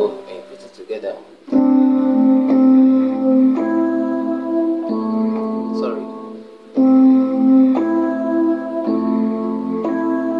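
Electronic keyboard on a piano voice playing a run of held chords. The first chord comes in about a second and a half in, and new chords follow every one to two seconds, with a short drop in level just before a chord at about seven seconds.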